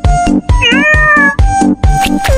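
A cat's meow, starting about half a second in and lasting under a second, laid over electronic music with a steady kick-drum beat.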